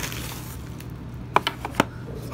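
A few sharp clicks and taps from the watch box's cardboard packaging being handled and opened, over a low steady hum.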